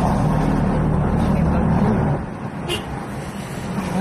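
Car engine and road noise heard from inside the cabin while driving, louder for about the first two seconds and then easing off.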